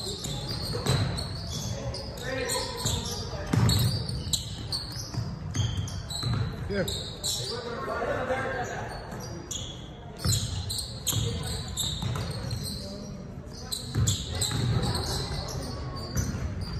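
Basketball game on a hardwood gym floor: the ball bouncing in repeated thuds, sneakers squeaking, and voices from players and spectators, all echoing in the large hall.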